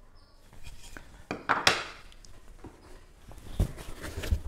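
Handling noise on a tabletop: a few light knocks, a sharper scrape or rustle about a second and a half in, then low thumps near the end as a cardboard tool box is picked up.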